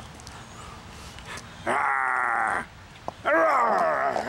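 A man growling and snarling like a monster: two loud growls, the first about halfway in and the second, falling in pitch, near the end.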